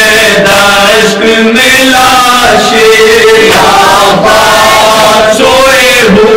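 Several men chanting a noha, a Shia mourning lament, together into a microphone. They hold a slow, steady melodic line at full voice.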